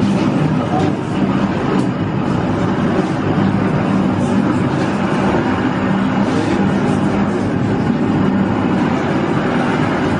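Hand-cranked grain mill grinding wheat into flour, a steady, loud rumble as the crank and flywheel keep turning, with the voices of the crowd around it mixed in.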